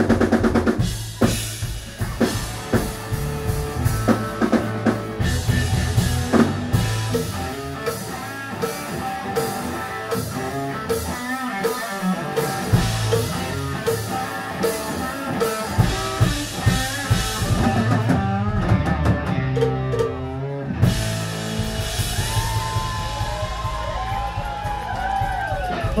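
Live rock band playing at full volume: drum kit beating steadily under electric guitar, with bending, wavering notes near the end.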